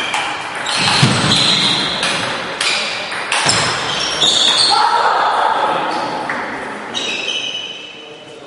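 Table tennis rally: the ball clicks sharply off the rackets and the table, each hit ringing in the large hall. The hits stop about halfway through as the point ends.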